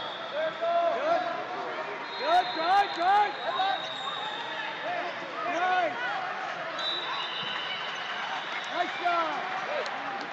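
Busy wrestling-hall hubbub: many overlapping voices shouting from around the mats, with a few sharp knocks about two to three seconds in.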